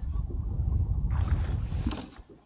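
Wind rumbling on the microphone, and from about a second in a burst of water splashing as a hooked walleye thrashes at the surface while it is swung aboard.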